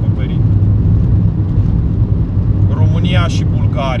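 Steady low rumble of a car's engine and tyres, heard from inside the cabin while driving along a road.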